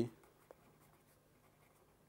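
Faint sound of a pen writing on paper, with one short click about half a second in.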